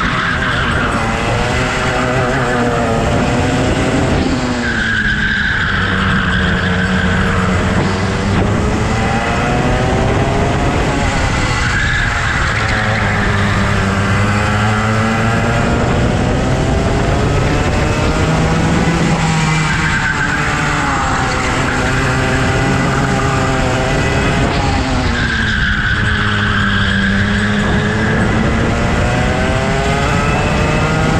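Go-kart engine heard from on board, its pitch rising on the straights and dropping into the corners over and over as the kart laps. A high squeal of the tyres comes in through some corners.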